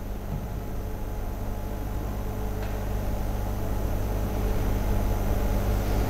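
A steady low hum with a hiss over it, growing slowly louder throughout.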